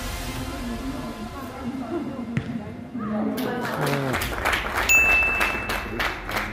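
Background music, then from about three seconds in, excited voices with a run of sharp claps as a goal goes in. A steady high tone sounds for about a second near the end.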